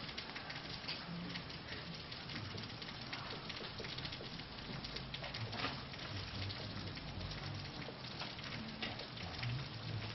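Felt-tip marker writing on a whiteboard: faint, irregular scratching strokes over a steady background hiss.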